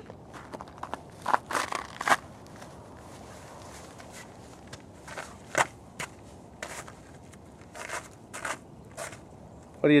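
A child's footsteps crunching irregularly over rough rock and patches of thin ice, a dozen or so scattered crunches and scuffs.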